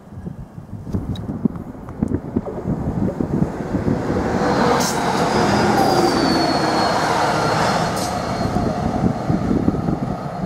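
Greater Anglia Class 755 FLIRT unit approaching at speed: the rumble of its engines and wheels on the rails builds to a peak about halfway through, with a faint high whine.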